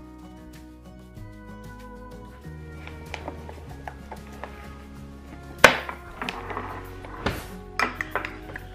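Background music plays throughout; about two-thirds of the way in comes a sharp knock, followed by a few lighter knocks near the end, as a glass food container is set down on a granite countertop.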